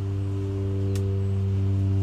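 A steady low hum with a stack of even overtones, unchanging in pitch and level, and a faint click about a second in.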